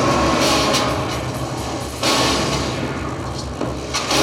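Digging tools striking earth and rock, a few sudden blows over a loud, noisy background with a steady low hum. The clearest blow comes about two seconds in.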